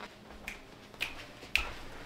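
Footsteps on a hard floor: three short, sharp clicks about half a second apart.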